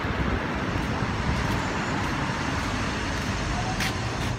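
Steady road traffic noise on a city street.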